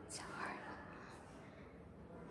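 A person whispering faintly, heard in the first half-second, then only quiet room tone.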